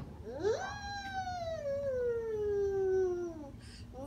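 A toddler's voice holding one long sung note for about three seconds, rising quickly at first and then sliding slowly down in pitch.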